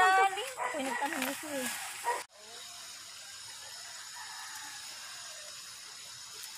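Voices talking for about two seconds, then a sudden cut to a low, steady outdoor background hiss with nothing else in it.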